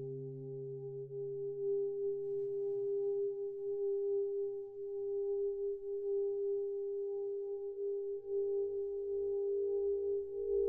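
Mutable Instruments modular synthesizer holding a steady drone of layered tones. A lower tone fades away in the first second or two, and a deep low tone swells in over the second half.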